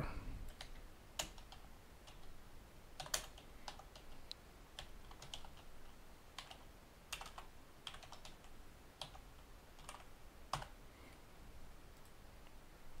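Faint typing on a computer keyboard: irregular single keystrokes with short pauses between them.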